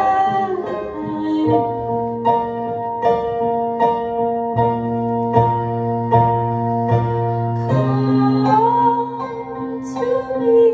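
Live band music: a keyboard plays sustained chords struck on an even pulse, with a low bass note underneath. A woman's singing voice trails off at the start and comes back in about eight seconds in.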